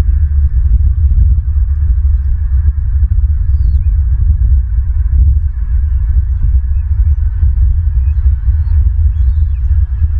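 Loud, steady low rumble of wind buffeting an outdoor nest-camera microphone, with a few faint, short high bird chirps.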